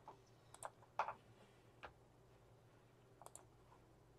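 Near silence with a few faint, scattered clicks from a computer being worked, as an image is confirmed for deletion.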